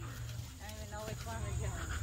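Faint, distant voices of people talking, over a steady low rumble.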